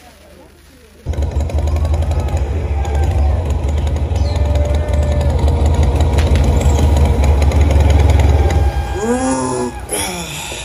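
Stage loudspeakers start the premiered video's soundtrack abruptly about a second in: a loud, heavy low rumble with rapid pulsing. Voices rise over it near the end.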